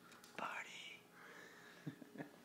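A faint whispered voice, with a couple of light clicks near the end.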